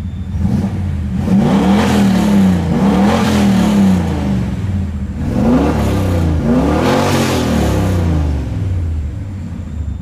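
Turbocharged 5.0-litre Ford 302 V8 in a BMW E36 M3, warm, revved from idle in quick blips: two rises and falls, a pause at idle, then two more, dropping back to idle near the end. It runs on a MicroSquirt fuel map that the owner calls not perfect yet.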